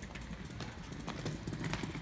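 Small wheels of a kids' kick scooter rolling over concrete paving stones: a low rumble with a run of irregular clicks and knocks.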